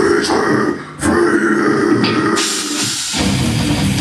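Live heavy metal band starting a song: held distorted electric guitar, cymbals washing in about halfway through, then the full band with drums and bass coming in heavily near the end.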